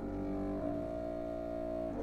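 Wind ensemble holding sustained chords, the harmony shifting about half a second in and again near the end.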